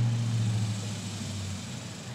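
A low, steady engine hum that fades away over about a second and a half.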